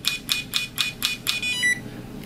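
Implantest implant-stability tester's probe tapping a dental crown in a rapid, even series of clicks, about six a second, then a short high beep about one and a half seconds in as the measurement ends.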